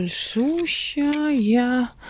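A woman speaking Russian, ending on one long drawn-out word with a falling-then-rising pitch.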